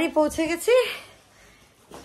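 A woman's voice speaking briefly during about the first second, then a lull with only low room sound.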